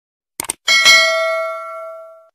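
Subscribe-button animation sound effect: a quick double mouse click, then a notification bell rings once and fades away over about a second and a half.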